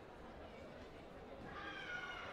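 Low murmur of a sports hall, then near the end a short high-pitched call from a voice, pitch sliding slightly.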